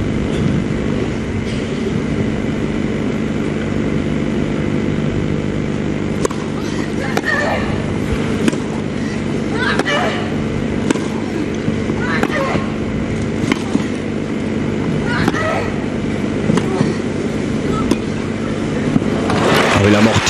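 Tennis rally on grass: racket strikes on the ball about once a second, several of them with a player's short grunt, over a steady low hum of crowd and broadcast. Applause swells right at the end.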